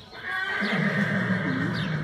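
A livestock animal calling once: a single long, low call that starts about half a second in and lasts about a second and a half.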